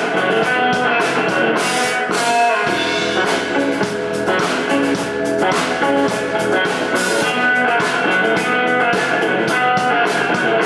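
Live indie rock band playing an instrumental passage without vocals, electric bass and guitar to the fore. The low end fills in about two and a half seconds in.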